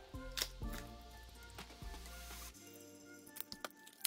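Soft background music, with scattered crinkles and clicks of plastic shrink wrap being handled and peeled off a K-pop album.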